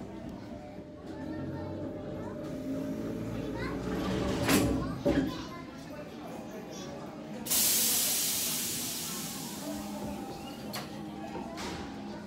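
Murmur of voices and children in a busy hall, with a sharp knock about four and a half seconds in. A sudden loud hiss cuts in about seven and a half seconds in and fades away over about three seconds.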